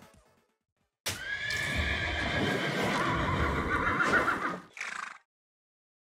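A horse whinny sound effect starting about a second in and lasting about three and a half seconds, with a short extra burst just before it cuts off.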